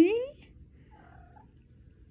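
Calico cat trilling with its mouth closed: a short, soft chirrup that rises in pitch at the start, then quiet.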